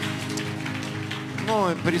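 Worship band holding a sustained chord, with a light patter over it. A man's voice comes in about a second and a half in.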